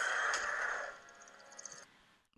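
A sound effect from the cartoon's soundtrack: a breathy, noisy rush with faint ringing tones, loudest at the start and fading away over about a second and a half.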